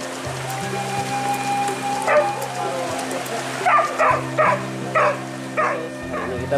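Hunting dogs barking, about six short barks, one about two seconds in and the rest close together in the second half, over background music with a steady low drone.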